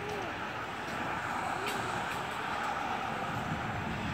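Steady noise of freeway traffic passing close by.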